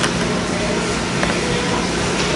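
Ice hockey rink ambience during play: a steady rumble of the arena with spectators' voices low in the background. A sharp knock of stick and puck comes at the start, and a fainter one a little past a second in.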